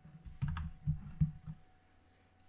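A short run of computer keyboard keystrokes, about half a dozen taps in just over a second, stopping about a second and a half in.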